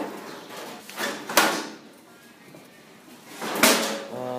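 Two short knocks or clunks, about a second in and near the end, the second the louder, with faint handling noise between.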